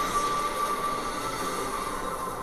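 Roar of dragonfire from a TV episode's soundtrack: a steady rushing of flames with a thin, held high tone running through it.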